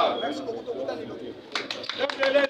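Men's voices talking, fading down around the middle, then a few sharp clicks with voices picking up again near the end.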